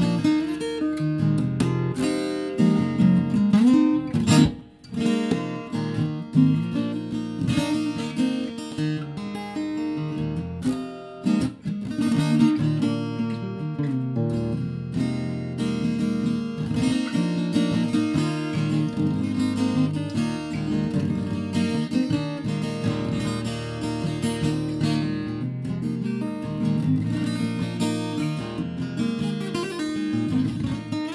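Ibanez AEG10 acoustic-electric guitar in DADGAD open tuning, played through a small 15-watt Ibanez amp: picked and strummed patterns of ringing notes, with a brief drop about four and a half seconds in.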